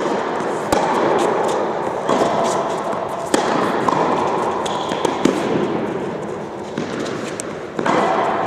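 Tennis balls struck by rackets and bouncing on an indoor hard court during a doubles rally: sharp pops every second or two, echoing in the hall, over steady background noise.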